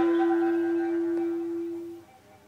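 A wind instrument holds one long, steady note with fainter wavering higher tones above it. The note fades in the second half and stops at the end.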